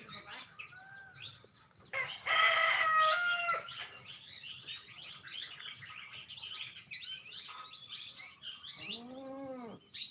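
Birds chirping throughout, with a rooster crowing loudly about two seconds in for about a second and a half. A shorter, lower call rises and falls near the end.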